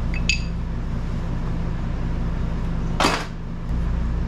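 Metal tools and small parts clinking at a car's rear brake caliper and hub: a short ringing clink just after the start and a louder, brief clatter about three seconds in, over a steady low hum.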